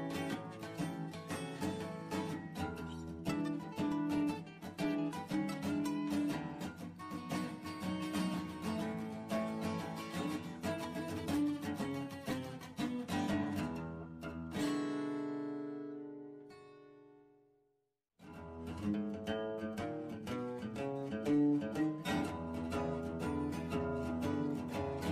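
Background instrumental music. About fourteen seconds in, it closes on a held chord that fades to silence, and after a brief pause the music starts again.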